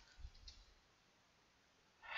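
A few faint computer keyboard clicks in the first half second as letters are typed, then near silence.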